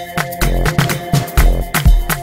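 Afro house track: a steady four-on-the-floor kick drum about two beats a second, with busy percussion and sustained synth tones over a bassline.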